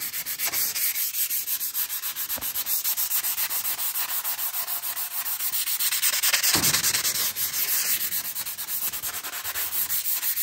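Fine 320-grit sandpaper, held folded in the hand, rubbed quickly back and forth over a dried hard wax oil finish on an oak-veneered board. It makes a steady scraping hiss of several strokes a second. This is a light cut back of the coat before recoating, and the paper cuts easily.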